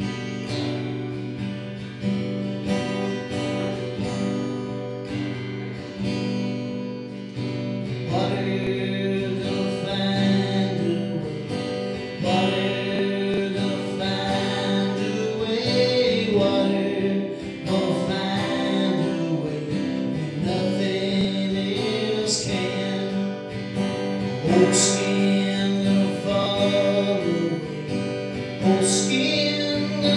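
Acoustic guitar strummed steadily, with a man's voice singing over it in a live song.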